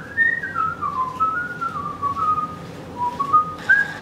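A person whistling a short tune in a string of held notes, stepping down in pitch over the first second, wandering through the middle, and rising again near the end.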